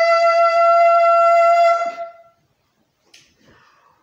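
One long, steady beep-like tone at a single unwavering pitch, held for about two seconds and then stopping.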